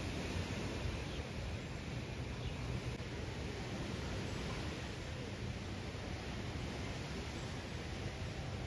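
Steady wind noise on the microphone: a low, fluttering rumble under an even hiss.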